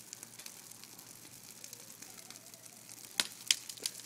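Bonfire of brush and twigs burning, a steady hiss with small crackles throughout and two sharp cracks a little after three seconds in.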